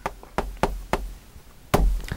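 Chalk tapping against a chalkboard while a word is written: a handful of short, sharp taps in the first second, then a louder knock near the end.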